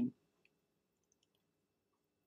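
Near silence in a pause between spoken phrases, with a few tiny, very faint clicks.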